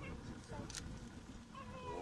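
Faint breath blowing into a smouldering tinder bundle to coax the ember into flame, with a short, slightly stronger puff about three-quarters of a second in.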